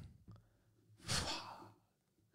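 A man's single short, breathy sigh about a second in.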